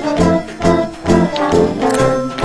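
Background music with brass and a steady beat, about two beats a second.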